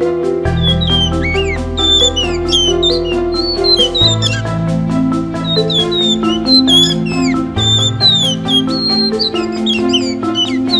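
Blue whistling thrush singing, a run of short gliding whistles beginning about a second in, over background music with held keyboard-like notes.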